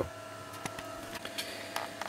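Quiet indoor room tone: a faint, steady electrical hum with a thin whine above it, and a few light clicks.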